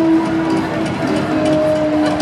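Live band music heard through a concert PA from the crowd, long held notes over a low rumble.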